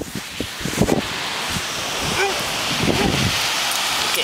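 Steady hiss of wind, with a few handling knocks in the first second and short snatches of voices.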